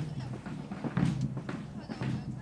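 Indistinct speech in short, broken phrases.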